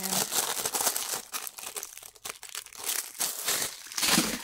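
Clear plastic wrapping crinkling as it is peeled off a rolled fabric desk mat, crackling on and off and busiest in the first second.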